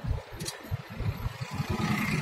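Car moving through town, heard from inside the cabin: a low engine and road rumble with irregular bumps.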